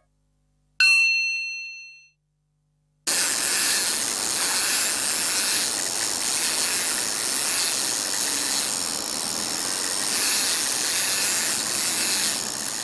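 A single bright chime strikes about a second in and rings away over a second or so. After a short silence a loud, steady rushing hiss sets in and holds.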